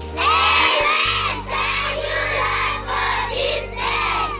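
A group of young schoolchildren singing together in short phrases over backing music with a steady bass.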